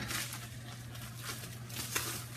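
Faint rustling and crinkling of wrapping material being handled and folded back around an object, over a steady low hum.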